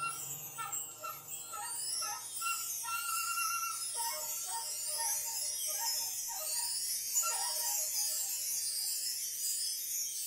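Free-improvised music: a sopranino saxophone plays quick, short pitched notes, several a second, over a continuous high shimmer of small metal percussion.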